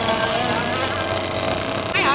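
Steady engine noise mixed with a background din of voices, with no single event standing out.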